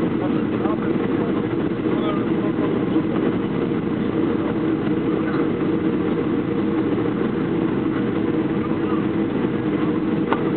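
Steady cabin noise of a Boeing 737-500 descending on approach: the drone of its CFM56 turbofan engines and rushing air, heard from inside the passenger cabin, with a low hum running under it.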